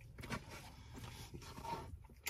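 Faint eating sounds: chewing, with a metal fork scraping and clicking in a plastic takeout tray.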